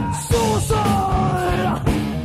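Heavy metal band demo recording: a long yelled vocal note, slowly falling in pitch, over distorted guitars and drums.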